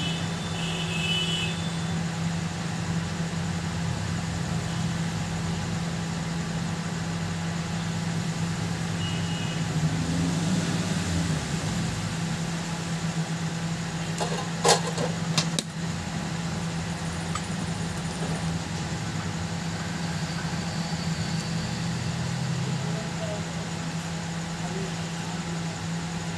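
A steady low mechanical hum over a constant noise bed, with two or three sharp clicks in quick succession just past the middle.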